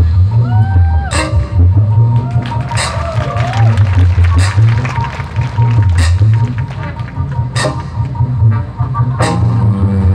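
Live jazz band playing an instrumental passage with clarinet, saxophone, trumpet, violin, guitar and percussion. A low bass line runs throughout, sliding melody notes rise and fall near the start and about three seconds in, and sharp cymbal-like accents land about every second and a half.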